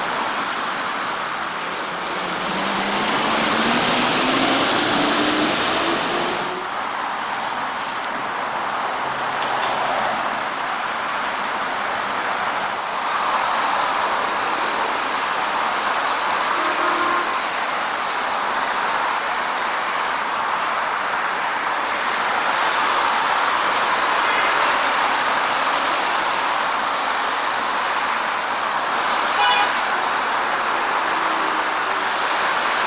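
Traffic on a busy multi-lane road, a steady rush of tyres and engines that swells as vehicles go by. A few seconds in, one vehicle's engine rises in pitch as it accelerates. Near the end there is a brief toot.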